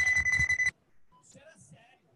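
Old video game's electronic sound played over a hall PA: a steady high beep over a buzzing, noisy electronic bed that cuts off abruptly under a second in. Then only faint scattered sounds remain.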